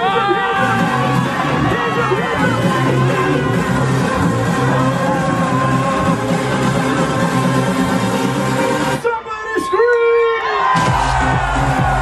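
Electronic dance music played loud over a party sound system, with a steady beat and a cheering crowd. About nine seconds in, the beat drops out for a couple of seconds under a held note, then comes back with deeper bass.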